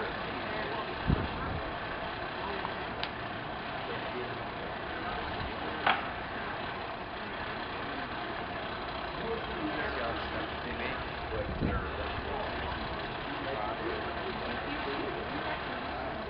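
Steady low rumble and hiss of outdoor background noise with indistinct voices, broken by a few sharp knocks, one about a second in and a louder one near six seconds.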